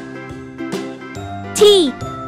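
Cheerful children's background music with a bell-like note struck a little faster than once a second. Near the end, a short, loud sound effect sweeps steeply downward in pitch.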